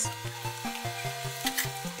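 Background music: a slow melody of held notes stepping from one pitch to the next. Under it is faint scraping of a spatula stirring rice noodles in a stainless steel pan.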